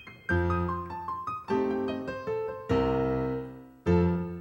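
Piano played slowly: a stride-piano lick practised at a slow tempo, a low left-hand chord struck about every second and a quarter, with a short climbing line of single right-hand notes between the chords.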